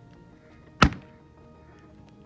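A taped rubber balloon bursting once when pierced with a pin: a single sharp pop a little under a second in. Soft background music runs underneath.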